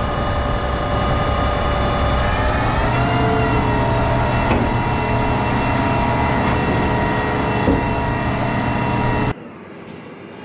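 A tractor's diesel engine running steadily, its pitch rising a little about three seconds in. Near the end the sound drops abruptly to a quieter hum heard from inside the tractor cab.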